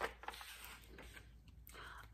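Pages of a picture book being turned by hand: faint paper rustling, with a small sharp tap at the start.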